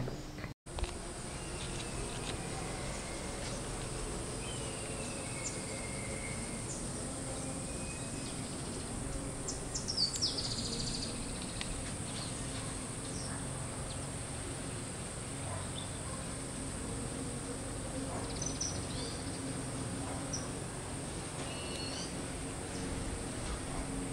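Outdoor garden ambience: a steady high-pitched insect drone under a faint low hum, with occasional short bird chirps.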